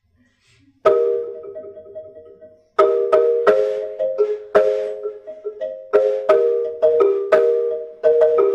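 Wooden marimba made in South Africa, played with mallets. About a second in, one struck chord rings out; from about three seconds a steady rhythm of strokes follows, about three a second, with several notes sounding together at each stroke.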